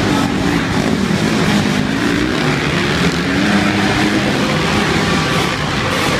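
Several motocross bikes racing at once, their engines revving up and down as the riders work the throttle around the track.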